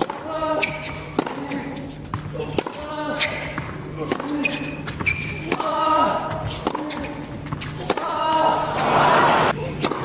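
Tennis balls struck with rackets during a rally on an indoor hard court, a series of sharp hits a second or so apart, with voices over them. A short rush of noise comes about eight to nine seconds in.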